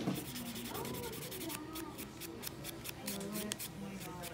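A nail file or buffer block rubbing over toenails during a pedicure, in rapid repeated strokes.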